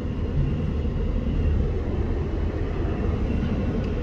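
Steady low rumble of road and engine noise heard inside the cabin of a moving car.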